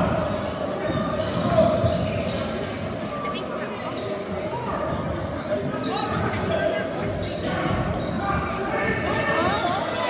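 A basketball being dribbled on a gymnasium's hardwood court during live play, with spectators talking in the stands.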